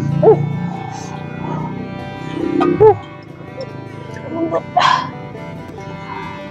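A dog giving a few short yips over steady background music.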